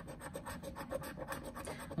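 Scratch-off lottery ticket being scratched with a small round scratcher: a rapid run of short rasping strokes across the ticket's coating.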